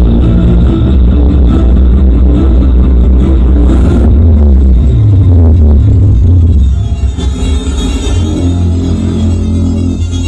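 Electronic dance music with a heavy, steady bass, played very loud over a large carnival sound system ("sound horeg").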